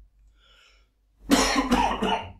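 A man coughing, two coughs in quick succession about halfway through.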